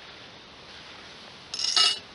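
A short, loud metallic clink near the end, from metal beekeeping equipment being handled, over a faint steady hiss.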